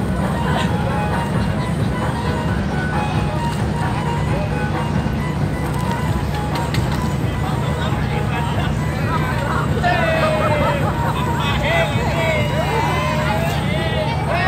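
The engine of a klotok, a small wooden river boat, running steadily with a low drone. From about ten seconds in, a singing voice comes in over it.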